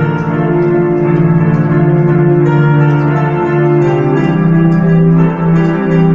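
Electronic keyboard playing sustained chords over a held bass note, in a bell- and organ-like voice; the chord changes about four seconds in.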